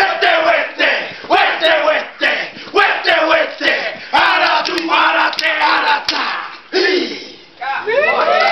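Group of men performing a haka war chant in unison: loud rhythmic shouted lines with sharp slaps in between, and a brief lull near the end.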